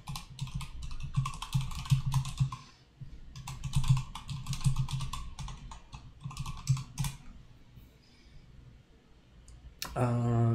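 Typing on a computer keyboard: quick runs of keystrokes, with a short break about two and a half seconds in, stopping about seven seconds in.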